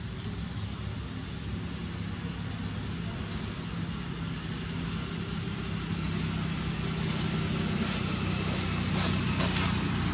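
A motor engine running steadily with a low hum, slowly growing louder. From about seven seconds in, crisp crackles and rustles of dry leaves.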